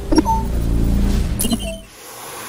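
Electronic intro sound design: a sudden glitchy hit with a short beep about a fifth of a second in, and a second hit with a lower beep near the end, over a low steady drone that fades out.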